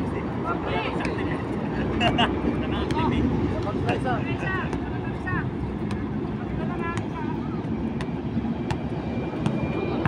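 Outdoor street ambience with a steady low traffic rumble and scattered voices. From about six seconds in, a basketball bounces on the concrete court, roughly once a second.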